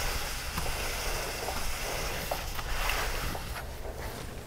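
Paper shop towel rubbing on a motorcycle's drilled rear brake disc as the wheel is turned by hand: a steady swishing as brake cleaner and grime are wiped off the disc.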